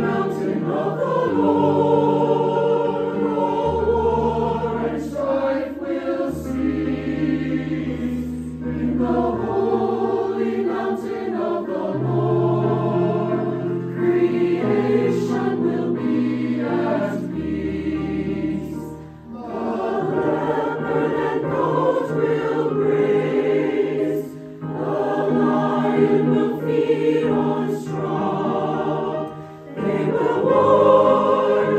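Mixed choir of men's and women's voices singing a slow sacred anthem with keyboard accompaniment, in long held phrases over sustained low notes. There are brief breaths between phrases about two-thirds of the way through and just before the end.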